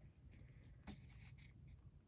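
Near silence, with faint handling noise as a TWSBI Vac Mini fountain pen is slid into a leather pen loop, and a small click about a second in.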